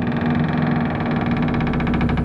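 Low, steady horror-trailer drone with a rapid, even pulsing running through it, like a machine idling.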